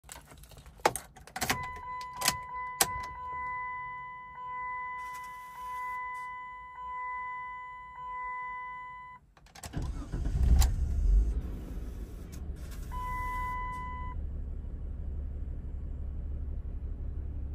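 Keys clicking into the ignition of a 2002 Chrysler Sebring Limited Convertible, then the dash warning chime ringing about once a second. After about ten seconds its 2.7-litre V6 cranks briefly and starts, settling into a steady fast idle near 1,200 rpm, with the chime sounding once more.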